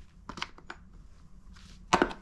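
Small plastic case of shotgun choke tubes being handled: a few light clicks and knocks, then one sharp snap near the end as the lid is closed.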